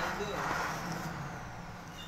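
Outdoor market background: a low steady traffic rumble with people's voices over it.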